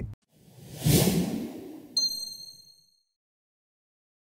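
Logo-sting sound effect: a swelling whoosh that peaks about a second in, then a bright, high ding about two seconds in that rings briefly and fades.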